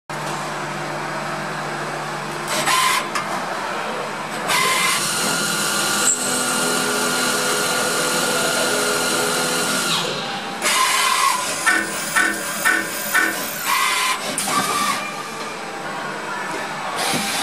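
CXK32-series CNC lathe running a screwdriver-bit machining cycle: a steady machine hum broken by loud bursts of hiss, the longest from about four and a half to ten seconds in, and a quick run of about five short pulses near twelve to thirteen seconds in.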